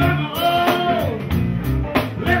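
A live blues band playing: electric guitar with bending lead notes over bass and drums keeping a steady beat.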